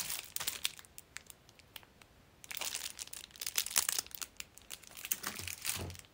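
Crinkling and rustling of packaging being handled close to the microphone, in three stretches: briefly at the start, longer from about two and a half seconds in, and again near the end.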